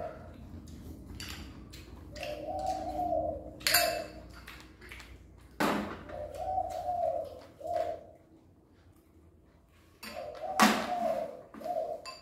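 A dove cooing: the same phrase, a longer coo and then a short one, three times about four seconds apart. Sharp clicks of spoons against bowls run between the calls.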